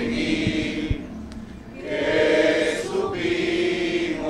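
A small group of people singing together. There is a short break between phrases about a second in, then the singing comes back louder.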